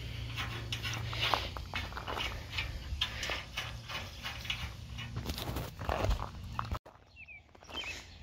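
Irregular light clicks and knocks of hand work on a steel trailer frame and its bolts, over a steady low hum. About three-quarters of the way in the sound cuts off to quiet outdoor background with a brief high chirp.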